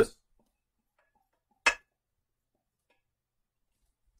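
Near silence, broken once, about a second and a half in, by a single short clink of the metal pot knocking against the glass casserole dish as the last ingredient is tipped in.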